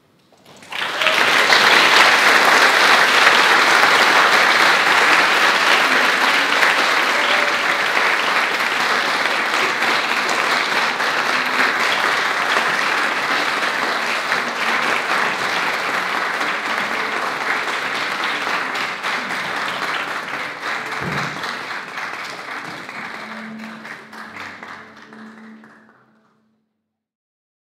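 Audience applauding at the end of a concert piece, starting suddenly about a second in, holding steady, then thinning and fading away near the end.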